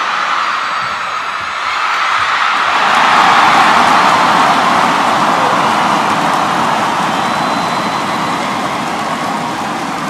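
Arena crowd noise at a badminton match: a loud, even roar of cheering that swells about three seconds in and then slowly eases off.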